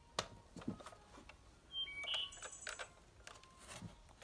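Light clicks and knocks, with a few short high beeps about two seconds in.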